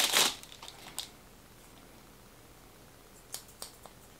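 Clear plastic wrapping crinkling briefly as new hairdressing scissors are unwrapped, followed by a few light clicks as the scissors are handled near the end.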